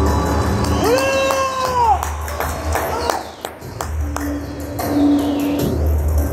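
Black Sea horon folk-dance music with a heavy low beat, over which the dancers' feet stamp sharply on the stage floor. About a second in comes a long drawn-out shout that rises, holds and falls away.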